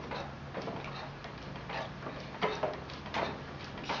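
Light, irregular clicking and ticking from a manual treadle potter's wheel turning, over a faint steady hum.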